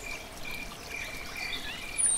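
Faint outdoor ambience: a bird chirping in short repeated high notes over a soft steady hiss.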